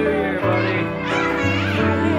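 Background music with held low bass notes that change pitch a couple of times, with children's voices and excited chatter over it.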